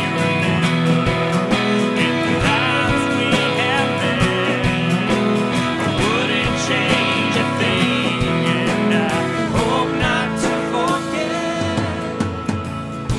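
Country-folk band playing live in the studio: strummed acoustic guitars and keyboard over a steady beat.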